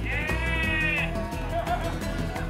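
A sheep bleats once, a single call of about a second near the start, over steady background music with a beat.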